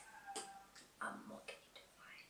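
Quiet pause with a few faint, irregularly spaced clicks and a brief faint murmur about a second in.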